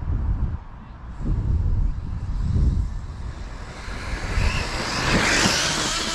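Talion XL 6S electric RC off-road car running at full throttle on bald rear tyres that struggle to put the power down. Its motor and tyres build from about four seconds in to a loud rushing hiss with a faint whine, loudest just before the end, as it passes close.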